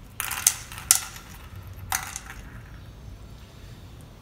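Small 4.5 mm steel balls clinking against each other and a glass bowl as a hand picks one out: a few sharp metallic clicks within the first two seconds.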